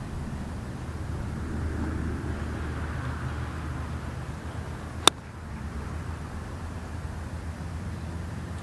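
Pitching wedge striking a golf ball: one sharp, crisp click about five seconds in, hit dead centre of the club face on a slow, partial swing. A steady low outdoor rumble runs beneath it.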